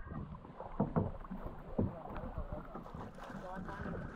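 Water sloshing around a small outrigger canoe, with a couple of short knocks about one and two seconds in.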